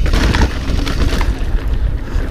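Wind buffeting the action camera's microphone as a mountain bike rolls along a dirt trail, a steady low rumble with a short rattle from the trail just under half a second in.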